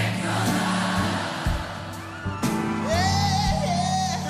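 Live band music with a crowd singing the refrain along with the band. About two and a half seconds in, a solo male lead voice comes in over them.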